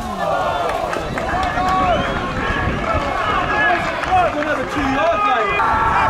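Several voices shouting and calling over one another: players and spectators at a football match, heard through the pitchside microphone.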